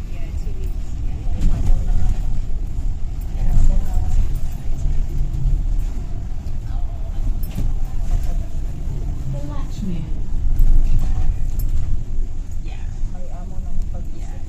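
London double-decker bus running along the road, a steady low rumble of engine and road noise heard from inside on the upper deck, with faint passenger voices in the background.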